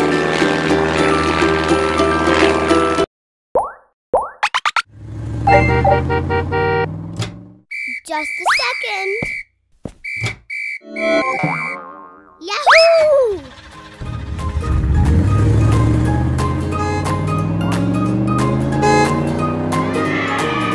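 Cheerful children's cartoon music that cuts out after about three seconds. Comic sound effects follow, boings and quick rising and falling pitch glides, and the music comes back in a little after the middle.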